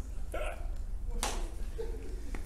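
Men's brief breathy laughter: two or three short chuckles, the loudest a little past the middle.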